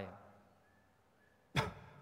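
A man's single sharp cough about one and a half seconds in, fading quickly.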